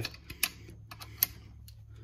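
A few light, sharp metallic clicks and taps from handling hex-shank driver parts on a torque limiter, the sharpest about a second and a quarter in, over a faint steady hum.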